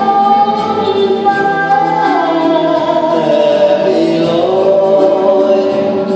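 Live symphony orchestra playing a slow, sustained passage of long held notes, with a melody line that slides downward about two seconds in.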